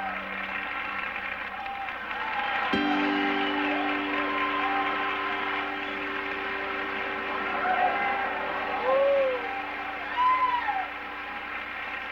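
Live band music with a steady held chord that comes in about three seconds in, and short calls from voices over it.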